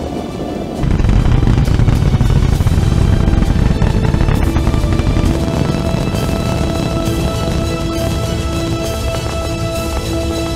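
Music with long held notes over a loud, deep rocket-launch rumble that sets in about a second in.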